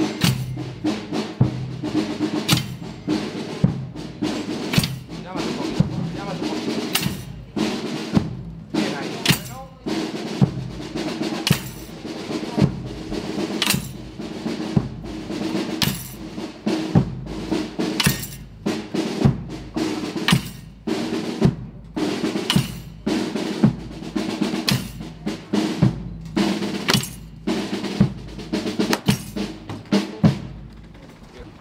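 A procession drum corps of snare drums and a bass drum playing a slow march beat, with a loud stroke about once a second and snare rolls in between.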